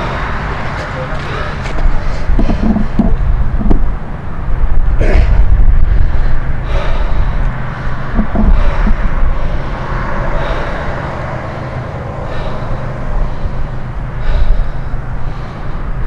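A man's hard, strained breathing with a few short grunts and gasps as he forces a steel wrench to bend in his hands, over a loud, steady low rumble.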